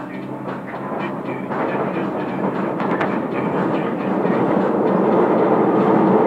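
Paris Métro train heard from inside the carriage, its running rumble and rattle growing steadily louder. A keyboard tune dies away in about the first second.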